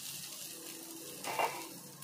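Chowmein noodles and fried chicken sizzling in a steel kadai: a steady frying hiss, with one brief louder sound about a second and a half in.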